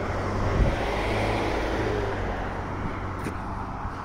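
A car driving along, heard from inside: a steady low engine rumble with road noise from the tyres.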